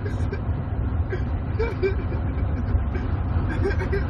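Steady low rumble of engine and road noise inside a car's cabin, recorded on a phone, with faint voices and a short laugh about a second and a half in.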